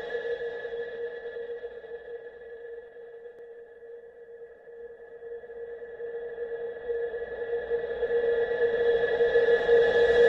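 A sustained electronic ringing tone at a few steady pitches, fading over the first few seconds and then swelling back up toward the end; an added intro sound effect.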